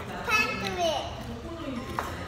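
A child's high voice calls out briefly, with a falling pitch, over other voices at the table. A short knock comes near the end.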